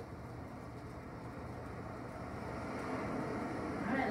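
Recorded ocean waves playing in the background: a steady wash of surf that slowly swells louder.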